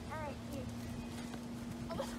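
A person's short wordless exclamation, rising then falling in pitch, just after the start, over a steady low hum. A soft knock near the end as a soccer ball is kicked on grass.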